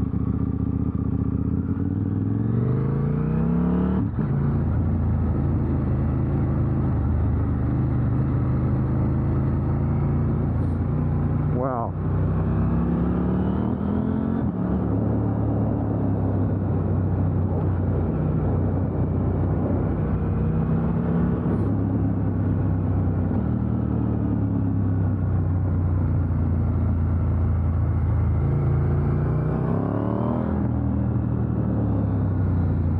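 KTM 890 Duke R's parallel-twin engine accelerating hard, its revs climbing and then dropping back as it shifts up through the gears, with a quick sharp rev dip-and-rise about halfway through. Wind rushes steadily underneath.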